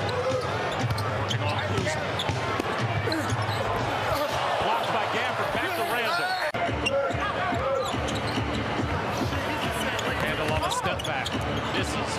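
Basketball game sound: a ball being dribbled on a hardwood court, with crowd noise and voices.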